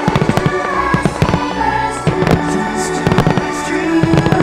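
Aerial fireworks shells bursting in quick crackling volleys about once a second, loud over sustained show music.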